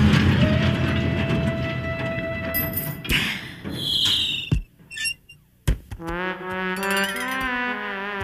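Cartoon soundtrack music fades out, giving way to a few sharp thuds and a short high squeal with a second of near silence. Pitched, brass-like music then starts again.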